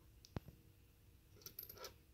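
Near silence, broken by one sharp click of small metal charms being handled, about a third of a second in, and a few fainter ticks near the end.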